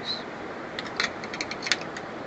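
Light metallic clicks and clinks as a cam timing gear held in locking pliers is clamped into a bench vise: a quick run of small knocks in the second half, with one sharper click near the end.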